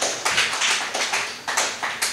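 A few people clapping, a quick irregular patter of claps at about five or six a second.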